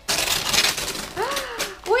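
Gift wrapping paper being torn open, about a second of tearing, followed by a woman's voice.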